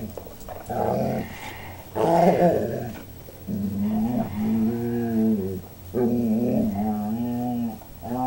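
Dogs growling in play: two short, rough growls in the first three seconds, then two longer, wavering pitched growls.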